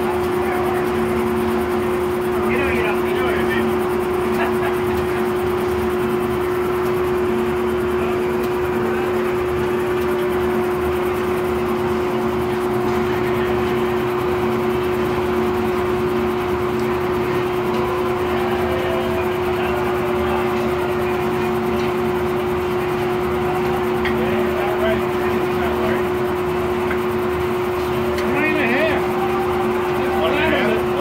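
Old circle sawmill running idle between cuts: the large circular saw blade and its drive spinning with a steady, unchanging hum and no log in the cut.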